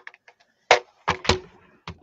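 Plastic clicks and knocks as alcohol markers are sorted through and pulled from a clear plastic marker case: small light clicks at first, then three sharper knocks in the second half.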